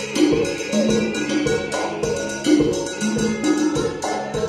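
A live Latin band playing an upbeat number, with keyboard and a drum kit keeping a steady beat.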